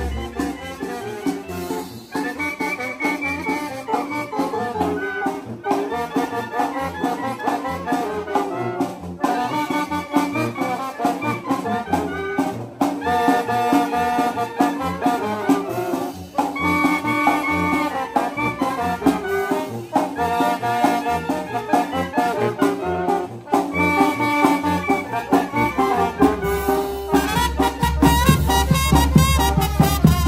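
Live brass band (banda de viento) playing a tune: trumpet and trombone over a low brass horn and a drum kit with cymbals, in phrases with short breaks between them.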